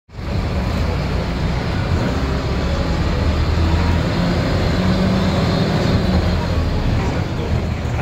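City bus under way, heard from inside the passenger cabin: a steady low engine drone with road noise.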